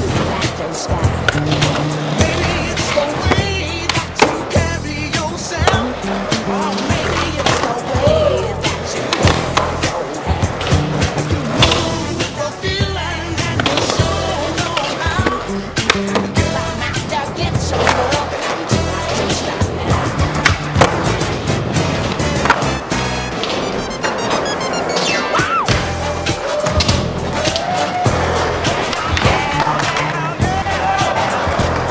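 Skateboard wheels rolling on a concrete floor, with repeated sharp clacks and knocks of boards popping, landing and hitting ledges and ramps, under background music with a steady beat.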